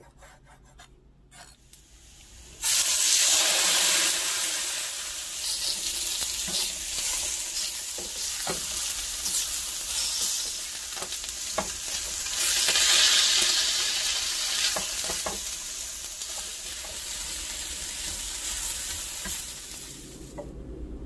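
Lamb liver strips frying loudly in oil in a wide pan with onions and green peppers, stirred with a silicone spatula, with scattered clicks of the spatula against the pan. The sizzle starts suddenly a little under three seconds in. Before that, a knife taps faintly through the liver onto a wooden cutting board.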